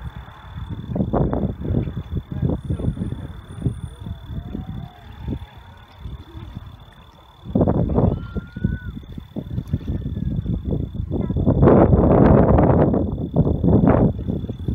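Distant roar of a Falcon 9 first stage's nine Merlin engines, arriving long after liftoff as a low rumbling crackle in uneven surges. It swells suddenly about halfway through and is loudest near the end.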